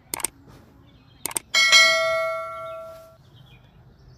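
Subscribe-button animation sound effect: two quick mouse clicks, two more about a second later, then a single bell ding that rings out and fades over about a second and a half.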